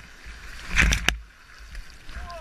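Water splashing and sloshing around the nose of a small craft moving through muddy water, with one stronger splash of spray just under a second in and a low rumble underneath.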